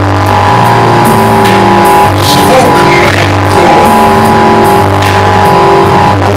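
Loud live experimental rock music from electric guitar and keyboard/electronics: a held droning chord over low notes that step to a new pitch every second or so.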